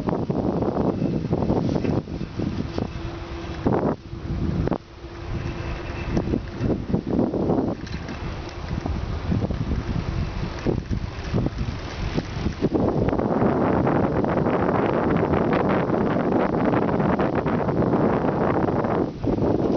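Wind buffeting the microphone of a camera carried on a moving bicycle, mixed with rumble from riding over pavement. It is uneven at first, with a faint steady hum in the first few seconds, and becomes a louder, steadier rush about two-thirds of the way through.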